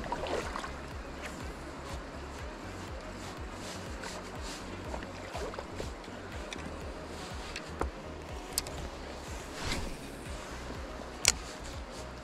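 Steady rush of a shallow river with wind rumbling on the microphone, broken by a few sharp clicks, the loudest shortly before the end.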